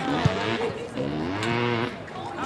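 Drawn-out shouts from a man watching the game, two long held calls, the second lasting about a second near the end.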